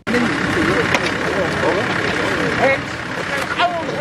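A bucket truck's engine running steadily, with several men's voices talking and calling over it.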